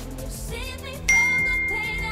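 A single bright notification ding about a second in, a clear high tone ringing on as it fades, like a smartphone alert chime, over pop-style background music.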